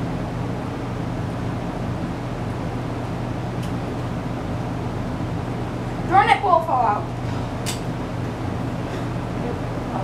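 A steady low hum with even room noise throughout. About six seconds in, a brief voice sound, then a single sharp click a second or so later.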